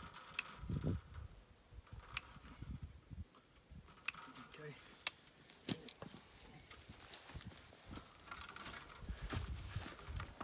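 Barbed wire being handled and tied off at a wooden fence post: scattered light clicks and scrapes of wire, some sharp single ticks a few seconds apart.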